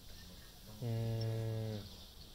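A man's voice holding a low, steady 'mmm' or drawn-out 'uhh' for about a second, starting a little before the middle.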